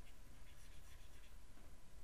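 Faint scratching of a stylus writing on a tablet as words are handwritten.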